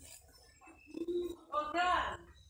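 Indistinct human voice sounds: a short low hum about a second in, then a brief higher-pitched bit of voice near the end.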